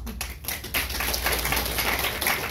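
Audience applauding: a few scattered claps at first, filling in to steady clapping about half a second in.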